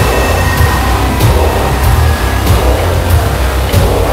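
Heavy metal band playing live at full volume, with a dense, distorted low end and drum or cymbal hits about every two-thirds of a second.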